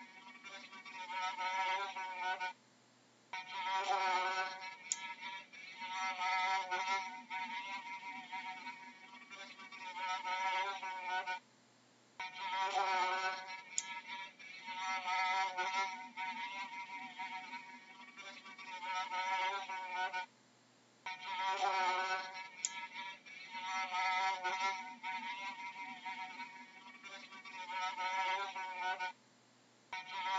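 A fly buzzing in flight, its pitch wavering up and down. The same stretch of recording repeats about every nine seconds, each time after a short gap of silence.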